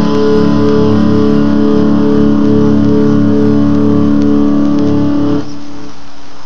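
Fender HM Strat electric guitar played through a SansAmp GT-2 amp-simulator pedal, letting one chord ring out with a slow wavering in its tone. About five and a half seconds in, the chord is cut short, and a quieter held note rings on.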